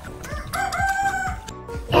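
A rooster crowing once, a long held call of about a second.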